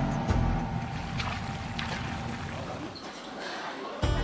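Soft background music over the steady hiss of a busy restaurant kitchen's steaming woks, the hiss thinning out about three seconds in.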